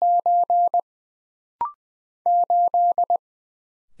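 Morse code sent as steady beeps of one pitch at 20 words per minute. It opens on the end of a repeated "9" (dashes, then a closing dit). A short two-note courtesy beep follows about a second and a half in, marking the end of that character. Then "8" is sent, dah-dah-dah-dit-dit, starting a little past two seconds.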